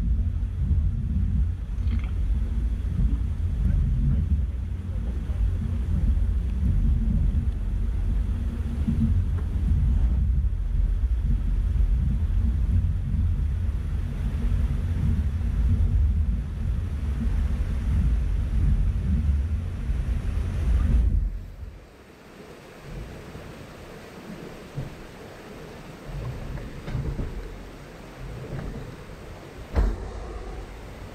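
Heavy low rumble of an off-road vehicle crawling over a rocky trail, with buffeting on the microphone. It drops off suddenly about two-thirds of the way through, leaving a quieter rushing hiss of the creek with a few knocks.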